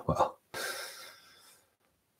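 A man's short vocal catch, then an audible breath drawn in lasting about half a second, then a pause.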